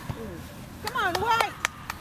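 Children's high-pitched shouts, a short burst of calls about a second in, with a few sharp knocks among them.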